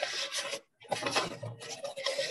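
Rasping, scraping noise in two stretches, with a short break about half a second in, picked up through a participant's microphone on a video call.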